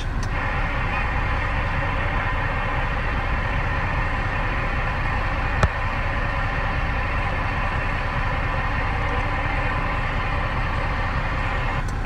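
Steady rushing noise inside a vehicle cab with a CB radio switched on, with a single sharp click about halfway through.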